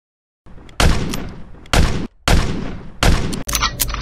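A string of about five loud gunshots, each ringing out briefly, spaced roughly half a second to a second apart, starting after a moment of silence, with a few quicker, smaller cracks near the end.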